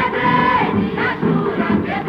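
A song from a 1954 Odeon 78 rpm record: voices singing over band accompaniment.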